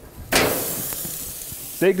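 Thick tomahawk steak laid on a very hot gas grill grate, sizzling. The sizzle starts suddenly and loud about a third of a second in, then settles to a steady hiss.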